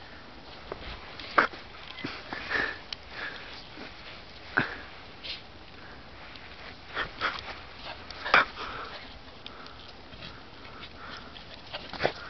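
Welsh Corgi sniffing and snuffling in short, irregular bursts, the loudest about eight seconds in.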